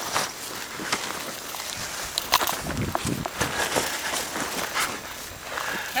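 Irregular footfalls, rustling and short knocks as a dog moves about on grass close to the microphone.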